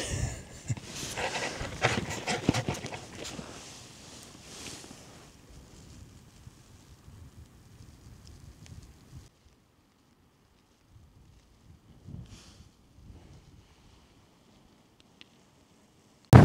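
A man laughing in breathy bursts for the first few seconds, the laughter dying away into near silence.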